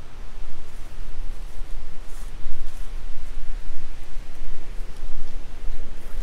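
Wind buffeting the microphone: a rumbling rush that rises and falls in uneven gusts.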